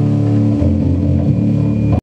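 Electric guitar and bass guitar holding ringing, sustained notes as the song ends, the pitches shifting about half a second in, then cut off suddenly at the end.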